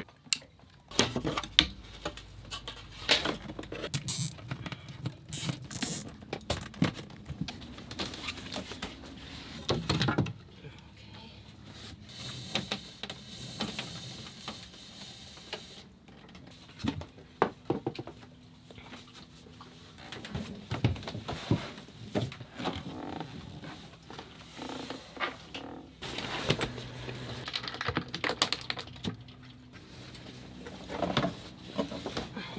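Handling noises from a Wi-Fi extender install: scattered clicks, knocks and rustles as cables and connectors are plugged into a small plastic extender unit and moved about among the boat's wiring and lockers.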